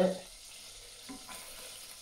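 Melted butter sizzling faintly in a saucepan over lowered heat, with a wooden spoon stirring through it.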